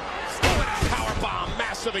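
A wrestler slammed down onto the wrestling ring: one loud impact on the canvas-covered ring boards about half a second in.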